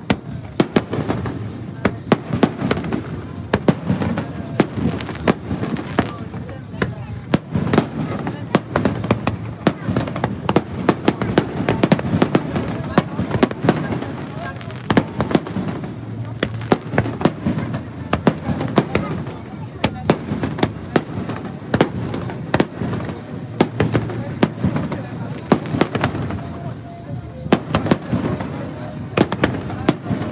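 Aerial fireworks shells bursting overhead in a dense, unbroken run of sharp bangs and crackles.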